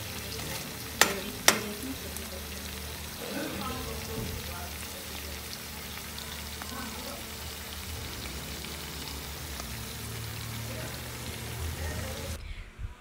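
Shrimp and garlic sizzling steadily in melted butter in a frying pan, stirred with a spatula. The spatula knocks sharply against the pan twice, about a second in.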